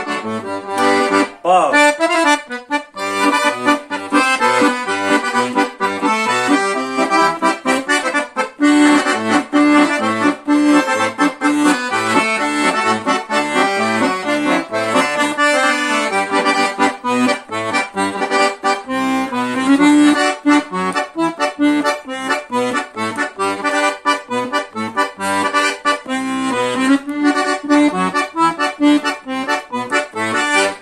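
Scandalli 120-bass professional piano accordion, octave-tuned, played with both hands. A melody runs on the right-hand keyboard over a steady rhythm of low notes from the left-hand bass buttons.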